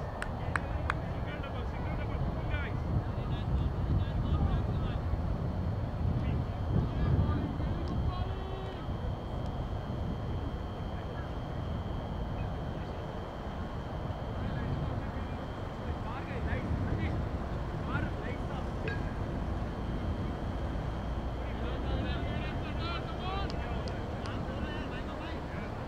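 Constant low rumble of wind on the microphone, with faint distant voices of players on the field and a few sharp clicks in the first second.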